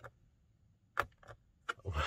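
A few faint, sharp clicks, one about a second in and more near the end with a short soft noise, as a car's push-button start is pressed and the engine does not crank. The car is not recognising the key fob and flags 'Key ID Incorrect'.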